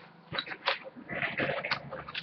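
Rustling and a few light clicks and knocks of objects being handled and moved about while something is searched for.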